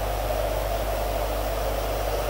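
Steady hiss with a low electrical hum, the even background noise of the room and its microphone system, with no other event.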